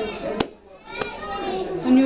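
A short lull in people's speech, broken by two sharp clicks about half a second apart in the first second, after which voices pick up again.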